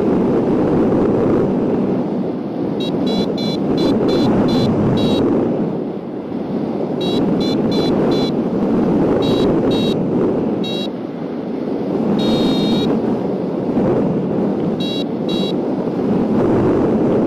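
Wind rushing over the microphone in flight, with a variometer beeping in short quick runs and one longer tone about twelve seconds in. The beeping signals the hang glider climbing in lift.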